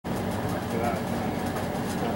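Drag-car V8 engine running at idle, with people talking over it.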